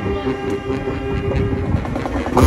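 Marching brass band holding one long sustained chord, the drums mostly dropped back.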